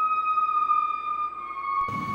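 A steady, high electronic tone with faint overtones, held for several seconds and drifting slightly lower in pitch, stepping down a little near the end: a sound effect laid over the cut between two interviews.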